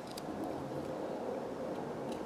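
Faint scraping of a Mora Clipper carving knife paring into a thin stick, with a few light ticks as the blade goes back over the notch lines to deepen them.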